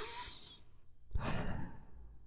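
A man breathing close to the microphone: a short airy breath at the start, then a longer sigh about a second in.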